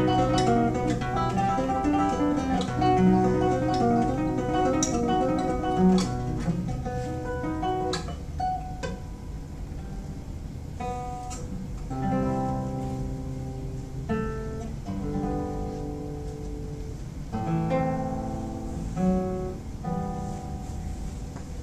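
Solo classical guitar played fingerstyle: a busy run of quick, flowing notes for the first several seconds, then slower, ringing notes and chords, a little quieter.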